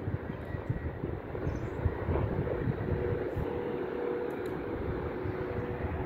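Steady rumble of distant highway traffic from a jammed multi-lane road, with a faint steady drone joining about two and a half seconds in.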